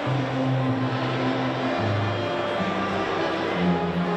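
A small string ensemble of violins, viola and cello playing a slow passage in held, bowed notes, the low cello line moving to a new note about once a second.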